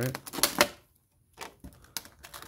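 Clear moulded plastic insert of a Pokémon card collection box clicking and crackling as it is handled, with cards and packs being pulled out of it. There are a few sharp clicks about half a second in, a brief near-silent pause, then more clicks near the end.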